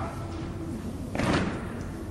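A single heavy thump just over a second in, short and sharp-edged.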